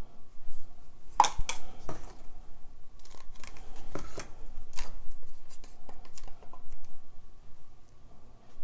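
A wooden craft stick scraping and knocking against the inside of a plastic party cup as thick acrylic paint is scraped out, with plastic cups handled on the table. Sharp, short scrapes and clicks come in clusters, the loudest about a second in.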